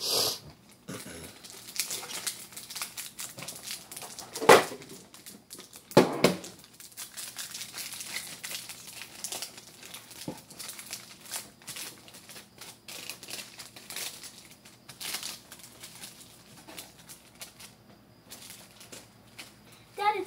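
Foil trading-card pack wrappers crinkling and tearing as packs are opened and cards handled, a dense run of small crackles with three louder sharp rips: one at the start, one about four and a half seconds in and one about six seconds in.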